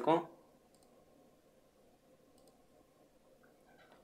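Two faint computer mouse clicks, about two seconds apart, over near-silent room hiss.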